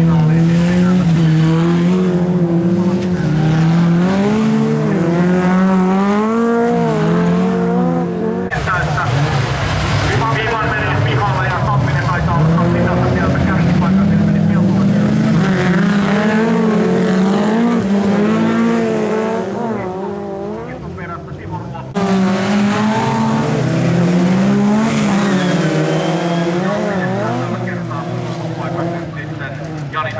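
Jokkis race cars racing on a gravel track, several engines revving up and down together as they accelerate and lift through the turns. The sound breaks off abruptly and resumes about 8 seconds in and again at about 22 seconds.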